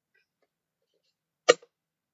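A fidget toy set down on the paper trading board on a wooden floor: one sharp knock about one and a half seconds in, with a faint second tap just after.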